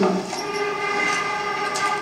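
A sustained, horn-like chord of several steady tones, held without a break, played back over the hall's speakers.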